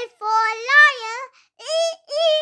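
A high-pitched child's voice singing the phonics chant: a long sung phrase, then a short, higher note near the end.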